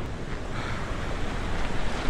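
Rough storm surf breaking, with a thin sheet of wave wash running up over the sand, as a steady rushing noise. Wind buffets the phone's microphone.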